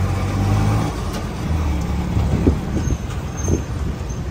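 A heavy motor vehicle's engine running with a low steady hum, strongest in the first second, over street traffic noise.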